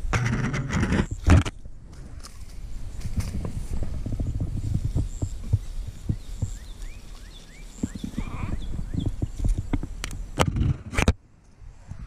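Tall grass rustling and knocking as a hand gropes in it for a landed bass. There are sharp knocks in the first second or so and again near the end, a low rumble of movement throughout, and a few faint short rising chirps in the middle.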